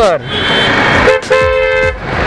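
A vehicle horn honking in city traffic: a short toot about a second in, then a steady honk of a bit over half a second, over a haze of road and wind noise.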